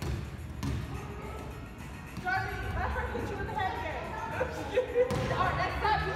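Rubber playground balls thudding on a gym floor a few times, with voices and children's calls echoing in the large hall.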